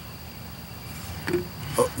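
Quiet outdoor background: a faint, steady high-pitched insect drone over a low rumble, with a man's brief 'Oh' near the end.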